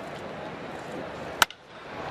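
Steady ballpark crowd murmur, then one sharp crack of a wooden bat hitting a baseball about 1.4 seconds in, the contact on a home run swing. The announcer says Stanton 'didn't get all of that one, you could hear', so the contact was not fully squared up.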